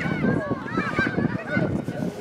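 Several high voices shouting and calling out at once during a football match, short overlapping calls one over another.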